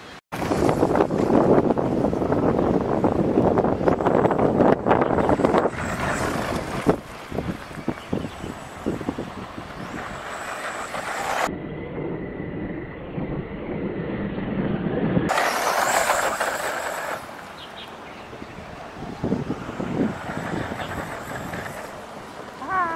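Radio-controlled short-course truck running flat out and sliding across grass and dirt, its motor and tyres making a loud, noisy rush. The sound is loudest in the first several seconds, turns dull and muffled for a few seconds past the middle, then comes back loud briefly.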